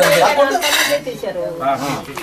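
Steel serving pot and steel plates clinking as food is dished out, with people talking over it.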